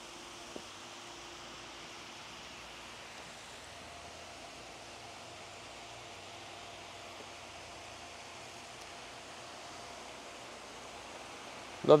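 Pool waterfall feature: water spilling over a stone wall into the pool, heard as a faint, steady rush, with a faint steady hum under it.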